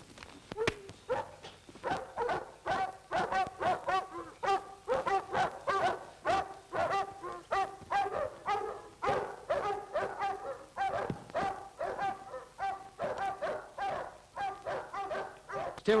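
Dogs barking rapidly and without let-up, about two or three barks a second.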